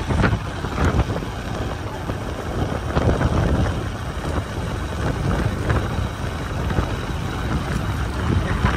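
Steady wind rush and buffeting on the microphone of a moving motorcycle, with the motorcycle running underneath it.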